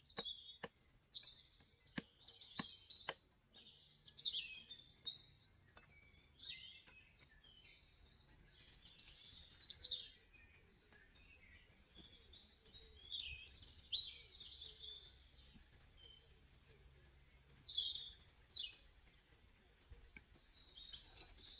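Birds chirping and calling in repeated bursts of quick, high notes. In the first three seconds a few sharp knocks of a machete chopping a wooden stick.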